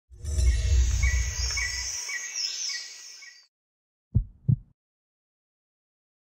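Opening sound design: a loud low rumble with short high chirps repeating about three times a second, fading out after about three seconds. About four seconds in come two sharp low thumps in quick succession, then silence.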